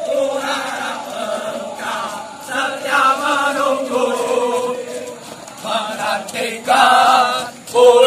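A squad of recruits chanting a running cadence in unison as they jog in formation. The chant is steady at first, then gets markedly louder about two-thirds of the way through as the group comes close.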